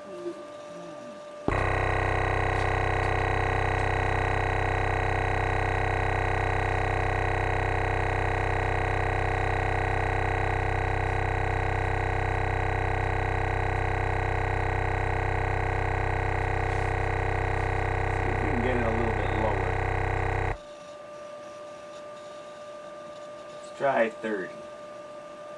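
Kicker CompC 12-inch subwoofer (44CWCD124) playing a steady low test tone in free air, its cone moving hard, with many overtones stacked above the tone. The tone comes on abruptly about a second and a half in and cuts off about twenty seconds in.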